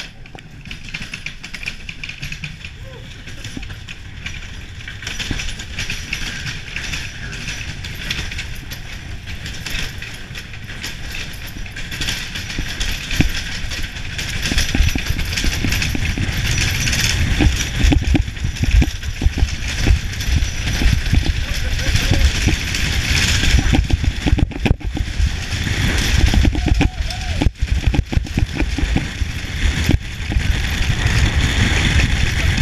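Bobsled running down an iced track: the runners hiss and rumble on the ice and the sled rattles, growing steadily louder as it gathers speed, with a heavy low rumble from about halfway on.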